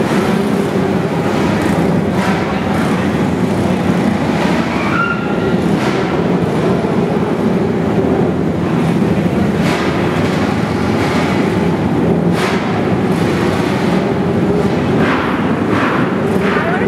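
Small racing kart engines running on an indoor dirt track, a steady loud drone with brief rises in pitch as throttles open.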